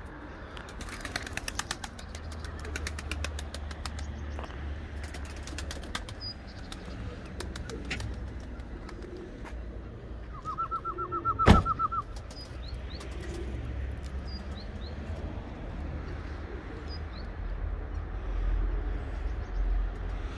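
Flying pigeons' wings flapping and clapping in rapid runs of clicks, with small birds chirping faintly. A little past the middle come a quick run of about ten short rising notes and a single sharp knock, the loudest sound.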